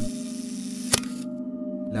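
A single camera shutter click about a second in, over a low, steady drone of ambient music.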